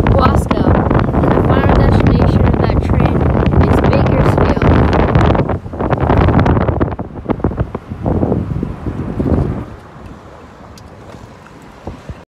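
Wind buffeting a phone's microphone at an open car window while driving, with road noise under it. It drops off sharply near the end to a quiet hiss as the car slows.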